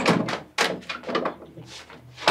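Fist pounding rapidly and irregularly on a closed white interior panel door, about ten loud knocks, the hardest at the start.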